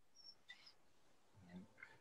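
Near silence: a pause with a few faint, brief high blips.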